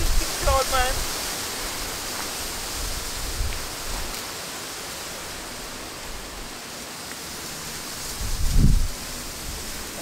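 Steady outdoor hiss, with low rumbling swells of wind buffeting the microphone, one strong gust near the end.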